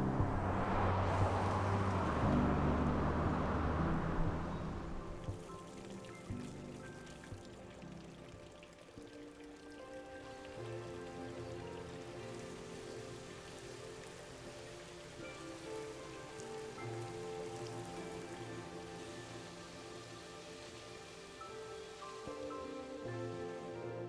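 Rain falling, loud for the first five seconds, then fading to a faint hiss. Underneath runs a film score of sustained, slowly changing notes.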